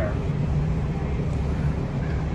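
Steady low rumble of downtown traffic.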